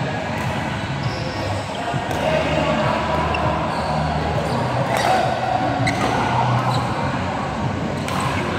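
Badminton rally: several sharp racket strikes on the shuttlecock, spaced a second or more apart, echoing in a large sports hall, over a steady background of voices from the other courts.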